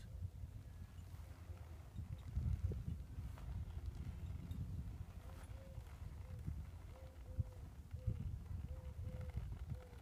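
A horse's hooves stepping slowly on soft arena dirt as it turns, making irregular dull thuds. A faint short note repeats in the background in the second half.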